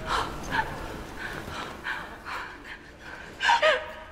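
A woman gasping and panting in short breathy bursts, then two louder high cries that fall in pitch about three and a half seconds in.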